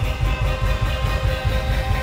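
Live reggae band playing the close of a song: a quick run of drum hits under electric guitar and keyboard.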